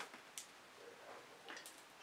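Near silence broken by a few faint clicks and taps, from plastic acrylic paint squeeze bottles being picked up and set down on the table.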